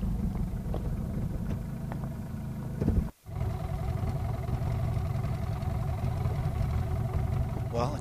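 Boat motor idling with a steady low rumble, broken by a brief dropout about three seconds in.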